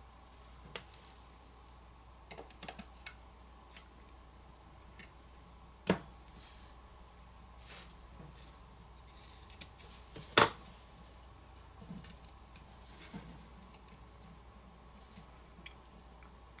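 Scattered small clicks and taps of fingers handling a smartphone's main board and flex cable inside its frame as the charger-port cable connector is pressed onto the board, with two sharper clicks about six and ten seconds in.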